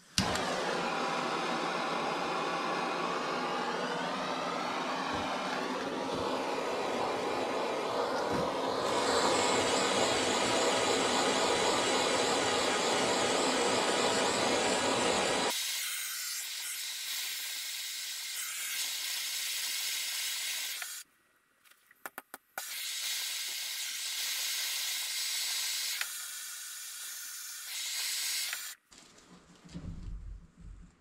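Handheld propane torch burning with a steady hiss. It lights suddenly, cuts out for about a second two-thirds of the way through, then burns again until shortly before the end.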